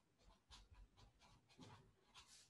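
Faint scratching of a marker pen writing on paper, a quick run of short strokes.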